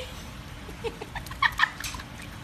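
A puppy whimpering in short, high yelps, about five times, the last few close together near the end.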